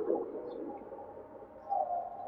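A pause in a man's talk over a hall microphone: his voice's echo dies away, then there is a brief soft hum near the end.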